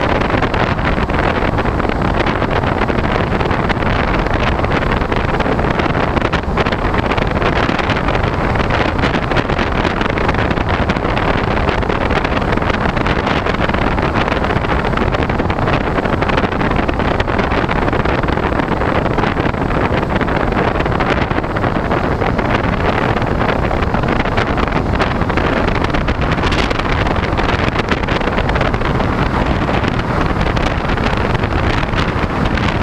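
Steady rush of airflow buffeting the microphone of the onboard camera on a Talon FPV model plane in flight.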